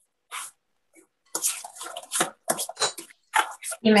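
A fork scraping and clinking in a glass bowl in quick, irregular strokes, stirring mashed sweet potato with eggs, oil and syrup. It comes over a video call, cutting in and out between strokes.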